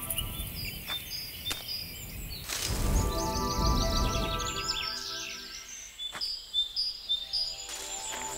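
Songbirds chirping over a soft, sustained music pad, with a low whooshing swell about three seconds in and a few sharp clicks.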